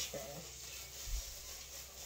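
A thin plastic trash bag rustling and crinkling as it is shaken open and pulled down over the head, with a soft low bump about a second in.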